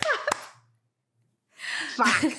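A short bit of a woman's voice and a single sharp hand clap about a third of a second in, then a pause and a breathy exhale near the end.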